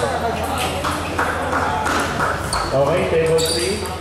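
Table tennis rally: a ball clicks sharply off paddles and table several times, over steady chatter of people in the hall.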